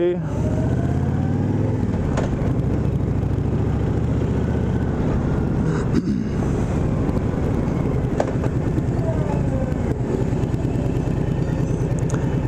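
Honda VTX 1300R's V-twin engine running as the motorcycle is ridden at low speed, its pitch rising and falling a little with the throttle.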